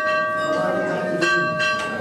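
A metal temple bell ringing with a clear, lingering tone, struck again about a second in.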